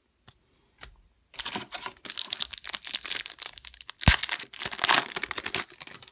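Foil wrapper of a trading-card pack crinkling and tearing as it is opened, in dense crackles mixed with sharp clicks. It starts after about a second of quiet, with one hard click about four seconds in.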